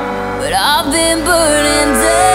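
Pop song: a female lead vocal slides through a gliding run over sustained backing chords.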